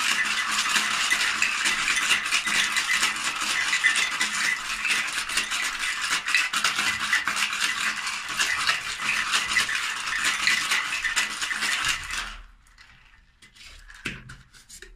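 Ice cubes rattling rapidly and continuously inside a metal two-tin cocktail shaker as a daiquiri is shaken to chill it; the rattling stops abruptly about twelve seconds in.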